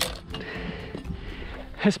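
Quiet handling of a chainsaw-cut cedar offcut as it is lifted off the beam, with faint scraping of wood on wood. A man's voice comes in near the end.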